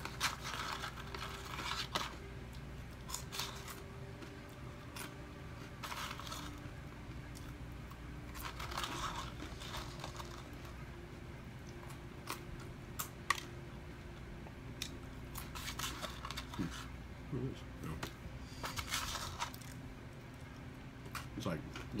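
A person eating fries: chewing and mouth noises, with the cardboard fry box rustling and clicking as fries are picked out of it, in short bursts every few seconds.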